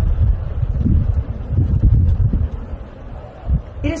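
Wind buffeting a phone's microphone: a loud, uneven low rumble, with faint murmuring underneath and a voice starting near the end.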